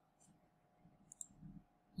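Near silence with a faint computer mouse click about a second in.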